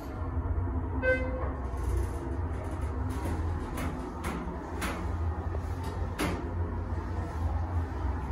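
Schindler 330A hydraulic elevator car riding down, a steady low hum of the car in travel. There is a short electronic tone about a second in and a few sharp knocks and rattles from the cab.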